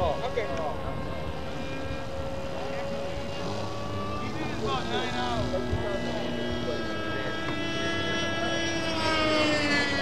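Radio-controlled model airplane engines running, more than one at once at different pitches, with a steady whine; one climbs in pitch near the end.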